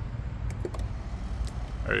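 Power-folding third-row seats of a 2018 Ford Explorer folding down: a low steady motor hum with a few light clicks from the mechanism.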